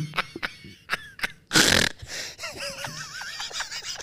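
Two people laughing hard and breathlessly: wheezing breaths and gasps, a loud sharp intake of breath about a second and a half in, then a high, wavering squeal of laughter.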